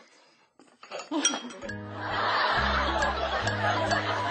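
A few light clinks of cutlery against a dish and a short laugh, then background music comes in about a second and a half in, with a bass line, and carries on as the loudest sound.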